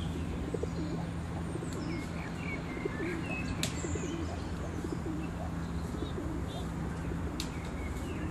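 Feral pigeons cooing in short low calls, with small birds chirping now and then. A steady low hum runs underneath, and a few sharp clicks come through.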